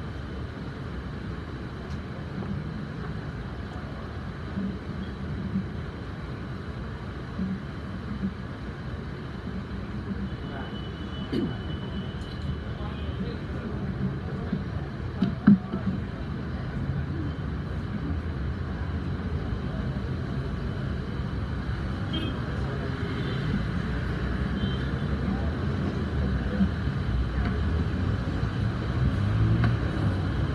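Meeting-room ambience: a steady low rumble with faint, indistinct murmuring, occasional soft clicks and rustles, and one sharp knock about halfway through. It grows slightly louder toward the end.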